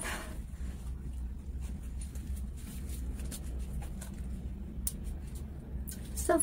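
Faint clicks and light rustling as a wristwatch and its packaging are handled, with a few sharper clicks near the end, over a steady low hum.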